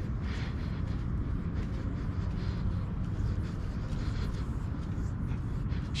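Steady low rumble of wind buffeting the microphone outdoors, with no distinct events.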